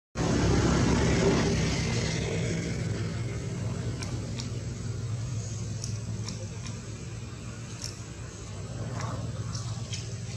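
A steady low motor hum, loudest at the start and fading slowly, with a few faint short ticks on top.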